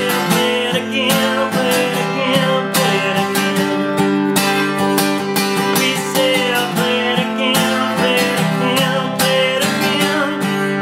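Steel-string acoustic guitar, capoed at the fifth fret, strummed in a steady rhythm through a chord progression.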